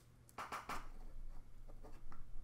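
Plastic Magic puzzle tiles handled by hand, clacking and rustling against each other in a short cluster about half a second in, then a few lighter taps and clicks.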